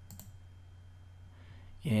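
A computer mouse clicks once just after the start, over a steady low electrical hum. A man's voice starts speaking near the end.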